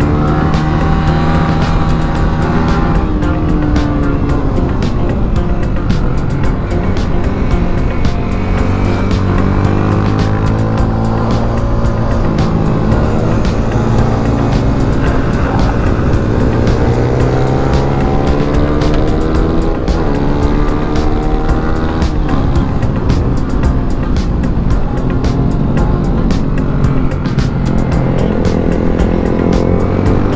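Yamaha Sniper underbone motorcycle's single-cylinder engine, heard from on board, revving hard on a track lap: the note climbs and drops again and again as the rider accelerates, shifts and brakes for corners.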